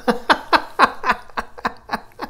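An elderly man laughing: a run of breathy laugh pulses, about four a second, trailing off.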